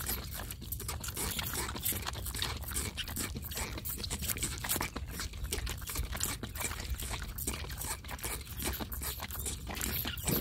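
Two juvenile vervet monkeys sucking milk from feeding bottles, a quick, irregular run of small wet sucking clicks and smacks.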